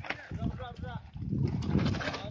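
Several people's voices talking and calling out at once, not clearly worded.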